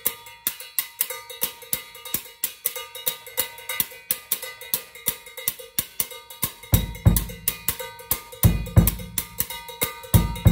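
Cowbell struck with a drumstick in a quick, steady rhythm, its metallic ring carrying between hits. Bass drum kicks join about seven seconds in.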